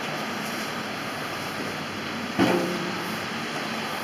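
Steady background noise of street traffic, with one short thump a little past halfway.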